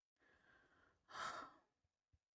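A woman's quiet breath in, followed about a second in by a short breathy sigh out close to the microphone.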